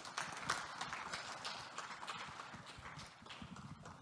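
Audience applauding: many hands clapping at once, thinning out a little toward the end.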